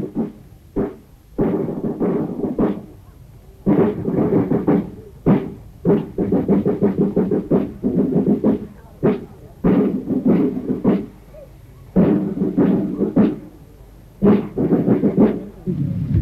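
Band music in short phrases of held chords, each phrase opening with a sharp drum beat and separated by brief pauses.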